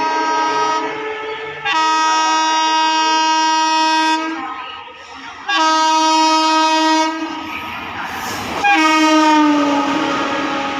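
WAP-7 electric locomotive's multi-tone horn sounding in long blasts as an express approaches at speed: four blasts of one to two and a half seconds with short gaps between them. The last, near the end, drops in pitch as the locomotive passes, and the rush and clatter of the coaches rises around it.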